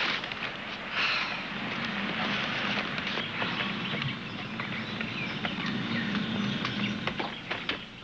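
Paper grocery bags rustling as they are handed over, then footsteps walking up to the house, with scattered clicks that grow thicker near the end. A steady hiss and a faint low hum run underneath.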